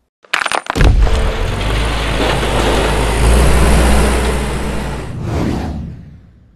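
Loud produced logo sound effect. It opens with a few sharp clicks, then a long noisy rush with a deep rumble underneath that fades away near the end.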